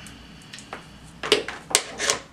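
XLR microphone cables being handled, their metal connectors clattering against each other and the desk: a few sharp knocks and rattles, the loudest two about a second and a quarter and a second and three quarters in.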